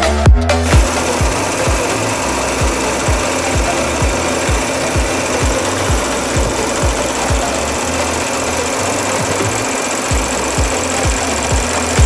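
2019 Audi A6's V6 TFSI engine running steadily, heard at the open engine bay with no revving, under a steady thumping dance beat.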